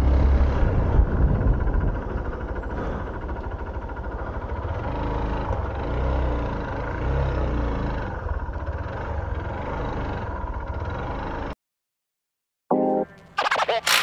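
Hero Xpulse 200's single-cylinder engine running at low speed, with wind rumble on the microphone; it cuts off suddenly about eleven and a half seconds in. After a second of silence, music with a chanted 'wap' starts near the end.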